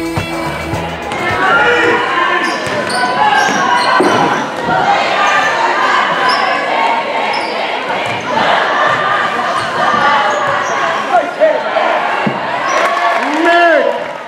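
Basketball game sound in a gym: the ball bouncing on the floor amid echoing voices of players and spectators, with short high squeaks throughout.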